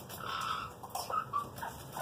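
Pet parrot making a few short, soft calls: one of about half a second near the start, then a couple of shorter ones about a second in.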